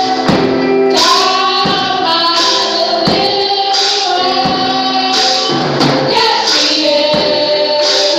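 Live gospel praise-and-worship music: women's voices singing over accompaniment, with a tambourine struck on a steady beat about one and a half times a second.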